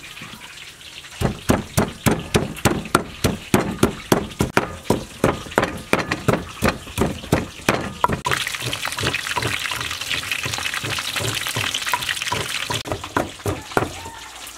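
Wooden pestle pounding red chili and garlic in a deep wooden mortar, about three strokes a second. About eight seconds in, a steady hiss sets in for several seconds, and pounding strokes come back near the end.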